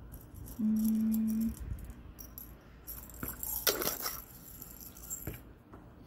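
Buttons rattling and clicking in a glass jar as fingers rummage through them, with a louder clatter about three to four seconds in. A brief steady low hum sounds about a second in.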